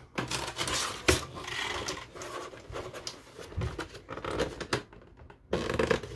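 Clear plastic toy packaging being handled and worked at: irregular scratching and scraping of the plastic tray, with scattered clicks and a sharp click about a second in.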